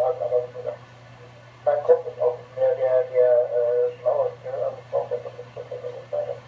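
A voice received over an amateur-radio FM repeater and played through a transceiver's speaker, narrow and tinny, with a pause of about a second near the start. A steady low hum runs underneath.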